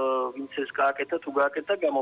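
A man talking over a telephone line, his voice thin and narrow-band.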